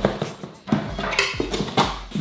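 A cardboard box shaken in the hands to hear what is inside, giving a few sharp knocks and rattles, as if it holds little or nothing.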